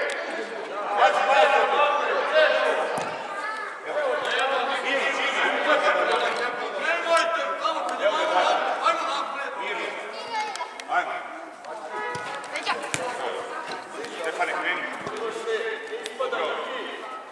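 Several people's voices calling and talking over one another, echoing in a large hall, with a few short knocks among them.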